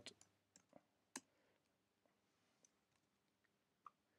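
Near silence with a few faint, scattered clicks of computer keys, the loudest about a second in.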